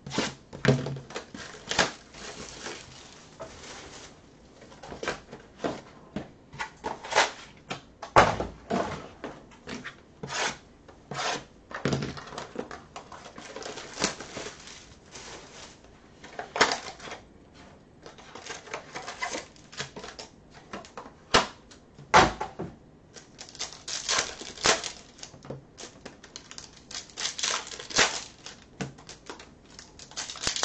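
Bowman Chrome baseball card pack wrappers being torn open and crinkled, with the cards clicking and sliding as they are handled. The crackles and rips are irregular, with a few sharper loud ones.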